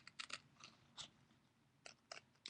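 Scissors snipping, a few faint short cuts spaced unevenly.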